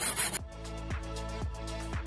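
Hacksaw strokes cutting a metal part in a vise, quick and rhythmic, cut off suddenly about half a second in. Background music with a steady beat, about two beats a second, follows.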